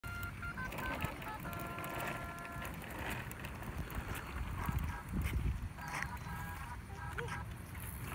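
A Chicco baby walker's electronic play tray playing a beeping tune of steady stepped tones, over a low rumble of its plastic wheels rolling on concrete.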